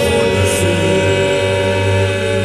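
Gospel choir music: voices holding long notes in harmony over a steady bass, with a brief cymbal-like hiss about half a second in.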